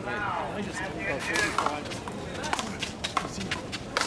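One-wall handball rally: a run of sharp smacks as the small rubber ball is struck by gloved hands and rebounds off the concrete wall and the court surface, coming thick and fast in the second half.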